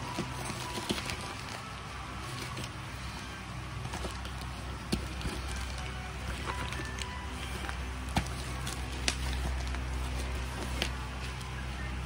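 Black plastic courier mailer bag crinkling and crackling as it is handled and turned over, with scattered sharp crackles. Background music with sustained low notes plays underneath.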